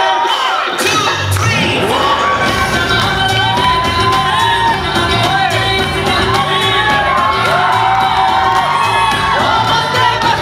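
A Bollywood dance remix with sung vocals, its bass and beat kicking in about a second in, while a crowd cheers and whoops over it.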